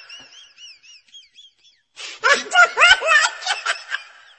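A faint, high whistle wavering up and down fades out over the first two seconds. A child's high voice then breaks in loudly with short cries that rise in pitch.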